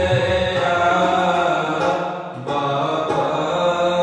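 Sikh shabad kirtan: a man's voice chanting over a Crown Flute harmonium's sustained reed chords, with tabla strokes underneath. The music dips briefly about two and a half seconds in, then carries on.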